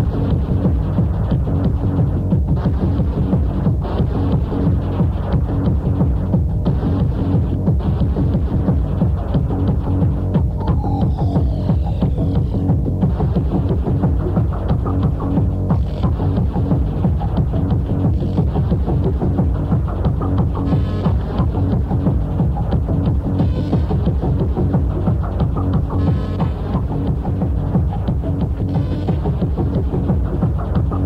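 Hardtek techno with a steady, driving beat and dense electronic loops. A falling synth sweep comes in about eleven seconds in.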